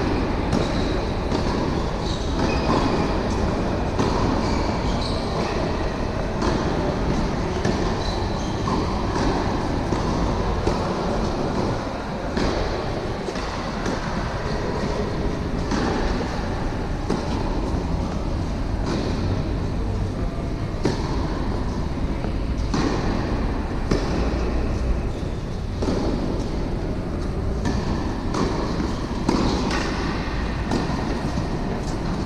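Tennis ball strikes and bounces on an indoor hard court, sharp knocks about every second or so, over a constant loud low rumble of the hall.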